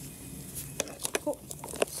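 Handling noise from a plastic bag and ECG lead wires on a neonatal manikin: the plastic crinkles, and a run of sharp clicks starts about half a second in, with a brief short blip in the middle.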